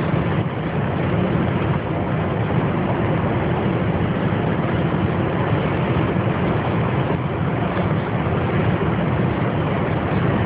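A car travelling at freeway speed, heard from inside the cabin: a steady low hum of road and engine noise that doesn't change.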